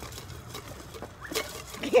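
Faint outdoor background noise with a few soft taps in a pause between talking, one clearer tap a little past halfway; a man's voice starts right at the end.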